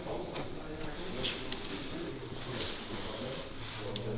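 Faint, low talk from people in the room, with a few light clicks.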